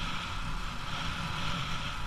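Bajaj Pulsar 220's single-cylinder 220 cc engine running steadily as the bike rides along at town speed, heard with road and wind noise.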